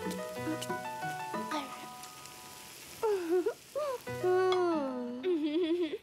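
Light cartoon background music of short stepped notes over the sizzle of breaded vegetables frying in a pan. About halfway through, a wordless voice comes in, gliding up and down in pitch.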